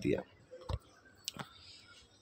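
A soft, dull click under a second in and a single faint sharp click a little past a second in, over quiet room tone, just after a man's speech ends.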